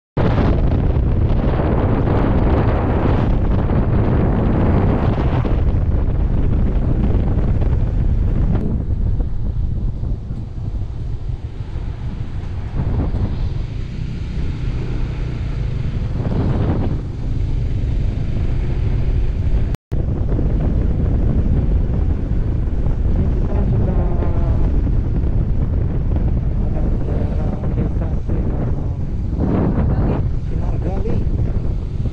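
Wind buffeting the microphone of a moving motorcycle: a loud, steady rush of air, heaviest in the low end, with the bike's running and road noise underneath. It eases somewhat for a stretch in the middle, and the sound cuts out for an instant at the start and again about 20 seconds in.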